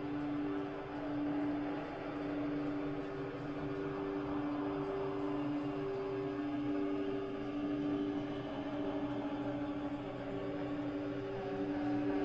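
Slow ambient drone music: two steady low tones held over a soft hiss, swelling gently in loudness.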